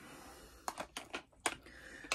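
A handful of light, irregular clicks and taps, mostly in the second half, from makeup compacts and eyeshadow palettes being handled and opened.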